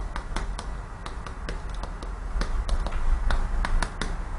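Chalk writing on a chalkboard: a string of irregular sharp taps and short scrapes as the chalk strokes out words and an arrow, over a low steady hum.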